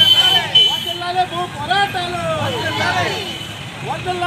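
Marchers chanting political slogans, the same short shouted phrase repeated every second or two.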